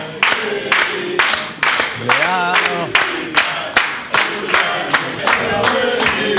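A group of voices singing a birthday song in unison, with rhythmic hand-clapping keeping time at about two claps a second.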